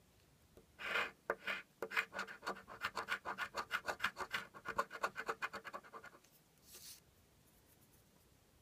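The coating being scratched off a scratch-off lottery ticket. A couple of short strokes come about a second in, then a run of quick back-and-forth scratching strokes for about four seconds, and one last stroke near the end.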